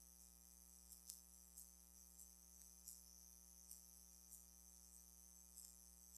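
Near silence: a faint, steady electrical hum in the recording feed, with a few faint ticks.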